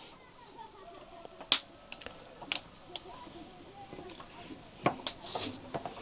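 A large knife chopping a boiled chicken on a round wooden chopping block: about half a dozen sharp, irregular knocks, the loudest about a second and a half in and a cluster of them near the end.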